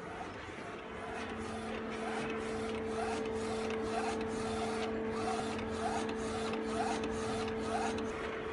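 UV flatbed printer running as it prints onto a wooden board. A steady hum is joined by a second, lower tone about a second in, under a quick, regular mechanical rhythm of about three strokes a second from the print-head carriage moving back and forth.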